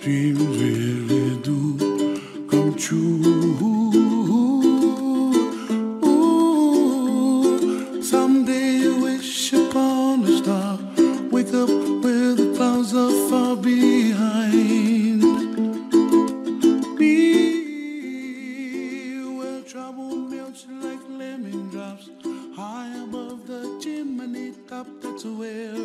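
Music played on a plucked string instrument such as a ukulele, notes changing in a steady melody; it drops noticeably quieter about three quarters of the way through.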